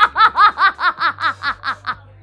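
A woman laughing heartily: a run of about ten quick "ha" pulses, about five a second, each rising and falling in pitch, tailing off toward the end.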